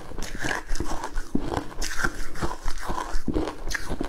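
Close-up crunching of crushed ice being chewed: a dense, irregular run of crisp crunches, several a second.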